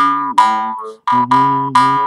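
Jaw harp (mouth harp) being plucked in a quick rhythm, about five twanging notes in two seconds, each struck sharply and dying away. The low drone stays nearly fixed while the mouth shifts the ringing overtone from note to note.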